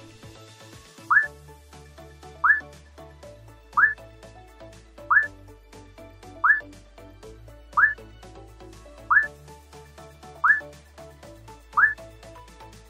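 Upbeat background music with a changing bass line, over which a short rising whistle-like note repeats about every 1.3 seconds, nine times.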